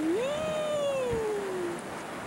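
A long wailing call, rising and then slowly falling in pitch, lasting about a second and a half.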